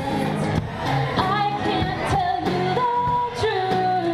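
Live band music: sung vocals in long held notes over strummed acoustic guitar and a drum kit.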